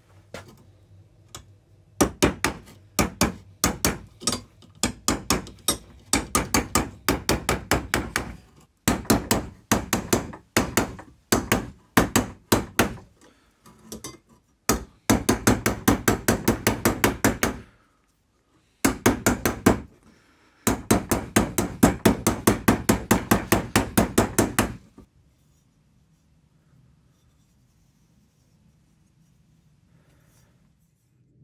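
Hammer tapping a dented brass blowtorch chimney against a metal table leg used as an anvil, knocking the dents out. Runs of quick, sharp taps, about four a second, broken by short pauses, stopping a few seconds before the end.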